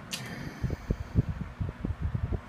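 Shinil SIF-F16 electric stand fan running, its airflow gusting on the microphone in irregular low rumbles from about half a second in. A short sharp click comes right at the start.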